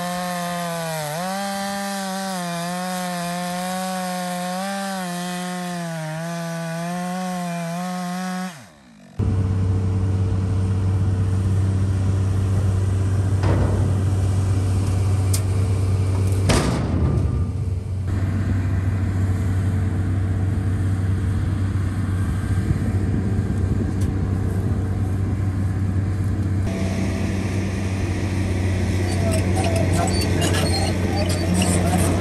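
A chainsaw cutting through a log under load, its pitch wavering with the cut, for about the first eight and a half seconds, then stopping abruptly. After that a tracked excavator's diesel engine runs steadily while it lifts and moves logs on a chain, with one sharp knock about halfway through.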